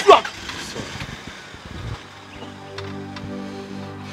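A short, loud shout that falls in pitch right at the start, then rough noise for a couple of seconds, with background film music that steadies again about two seconds in.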